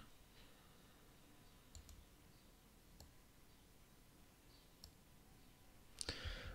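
Faint computer mouse clicks over near silence: a quick pair just before two seconds in, then single clicks around three and five seconds in.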